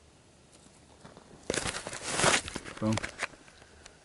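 A tobacco pipe being lit and puffed: about a second of hissing and crackling with a few clicks, followed by a short hummed 'mhm'.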